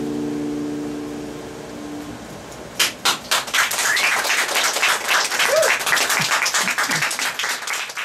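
Final chord of two steel-string acoustic guitars ringing out and fading over about two and a half seconds, then a small audience breaks into applause.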